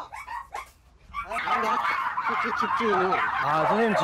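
A pack of many dogs barking and yelping at once, a loud, dense, overlapping chorus that starts about a second in after a brief lull.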